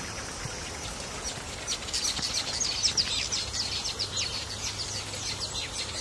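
Small birds chirping: a fast run of short, high, falling notes that starts about a second in and thins out near the end, over a steady outdoor background.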